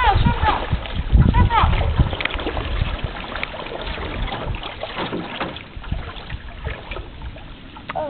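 Canoe on the move: water splashing and sloshing from paddling, with small knocks against the hull, growing quieter toward the end. Brief bits of voice in the first two seconds.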